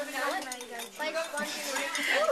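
A stirring rod clinking repeatedly against the side of a glass jar as a sand-and-water mixture is stirred to keep the sand suspended.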